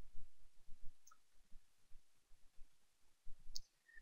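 Quiet room tone with a few faint, brief clicks, one about a second in and another near the end.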